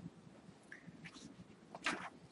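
Quiet room tone in a lecture room. There is a faint, short, high squeak about three-quarters of a second in and a brief louder sound just before the end.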